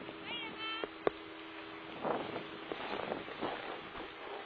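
Skis scraping and hissing over packed snow as a skier pushes off and gathers speed, a rough, crackly noise from about two seconds in, with some wind on the microphone. Before it, a short falling vocal call and a single sharp click about a second in, the loudest sound.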